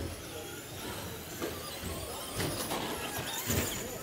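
Traxxas Slash short-course RC trucks racing: the whine of their electric motors over tyre noise, with several sharp knocks, the loudest about three and a half seconds in.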